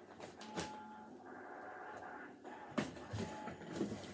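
A few scattered knocks and thumps over low room noise, the loudest near the end, as a person moves about close to the microphone.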